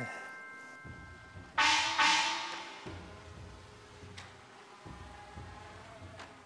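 Edited-in musical sting: a struck bell- or gong-like hit over a low drum about a second and a half in, ringing and fading away, followed by softer low drum hits.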